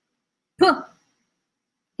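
Speech only: the letter "P" is spoken once, about half a second in, and the rest is near silence.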